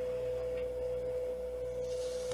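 A steady electronic tone at one constant pitch, with a fainter second tone just above it, holding without change.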